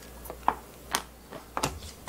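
A few light clicks and taps as a stainless steel scoop and a small plastic container are handled while dried red chili powder (gochugaru) is scooped from a stainless steel bowl: three short sharp knocks spread across about two seconds, with quiet between them.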